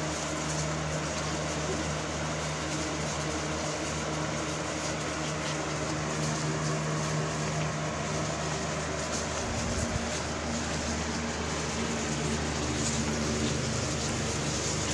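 A machine running with a steady, even hum and a low drone.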